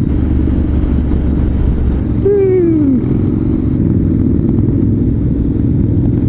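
Motorcycle engines running steadily in a group ride: the rumble of the Honda CTX700N's 670cc parallel twin mixed with Harley-Davidson V-twins following close behind. A short falling tone sounds about two seconds in.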